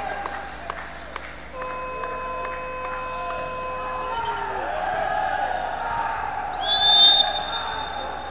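A referee's whistle blown once, briefly, about seven seconds in: a short, shrill, high note that is the loudest sound here. It sounds over the murmur of a crowd in an arena, and earlier a steady tone lasting about two and a half seconds sounds from about a second and a half in.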